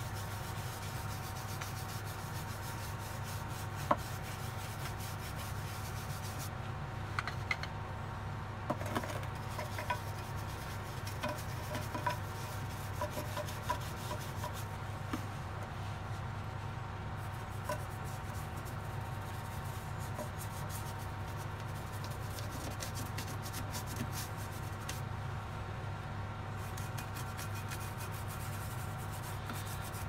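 Beeswax polish being rubbed by hand into the rough stone surface of a large Tropaeum bowerbanki ammonite fossil: soft, continual rubbing with a few small clicks, over a steady low hum from a running extractor fan.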